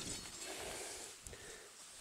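Soybean leaves rustling and brushing against each other as a hand and the camera push in among the plants: a soft, steady rustle that fades a little toward the end.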